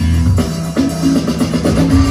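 Loud dance music with a drum kit beat and a bass line, played over a club sound system.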